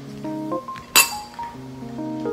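A single sharp, ringing clink of metal chopsticks striking a ceramic bowl about a second in, over soft background music with held notes.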